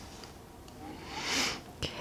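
Quiet room tone, then about a second in a short breath drawn in through the nose, followed by a faint click just before speech begins.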